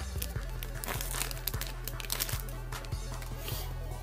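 Crinkling and rustling of Yu-Gi-Oh cards being handled close to the microphone, a run of short crackly sounds, over background music with a steady low bass line.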